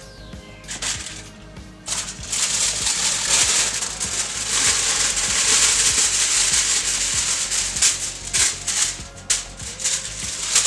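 Plastic bag of frozen crinkle-cut fries crinkling and rustling as the fries are shaken out into a skillet, with light clicks of fries landing; the rustling starts about two seconds in and stops near the end. Background music plays underneath.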